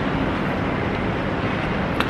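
Steady outdoor street noise: wind rumbling on the microphone over the sound of road traffic.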